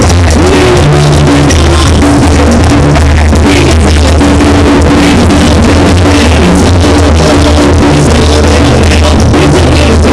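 Live banda music from a band on stage: a heavy bass line, sustained instrument notes and a drum kit keeping a steady beat. The recording is loud and overloaded near full scale, with distorted sound.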